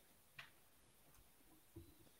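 Near silence: room tone over the call, with a faint click about half a second in and another faint click near the end.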